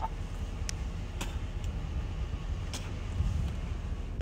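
Low steady rumble inside a car, with a few faint clicks scattered through it.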